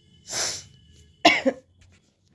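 A person coughing: a short breathy burst about half a second in, then a louder, sharper cough just past a second.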